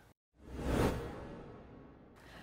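A whoosh transition sound effect: a rush of noise over a low rumble that swells to a peak about a second in, then fades away.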